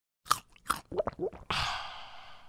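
Logo-animation sound effects: two sharp clicks, then a quick run of short popping blips that bend in pitch. Near the end comes a bright, shimmering swish that fades away.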